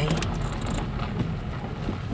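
A car moving slowly, its engine and tyres giving a low steady rumble heard from inside the cabin.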